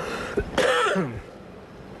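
A man's brief vocal outburst, a cough-like exclamation whose pitch falls away, over within about the first second.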